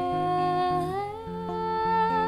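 A woman's voice holds a long note that slides up to a higher pitch about a second in and wavers with vibrato near the end, over clean electric guitar picking a repeating low pattern.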